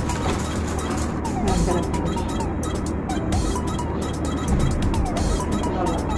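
A steady low hum under faint background music, with light crackling rustles as soft roll bread is pulled apart by hand.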